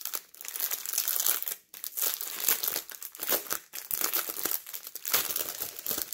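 Clear plastic packaging bag crinkling as it is handled and turned in the hands: a continuous crackle with a short pause about a second and a half in.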